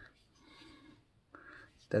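A quiet pause in a man's talk holding only faint, soft noises, with his voice starting again right at the end.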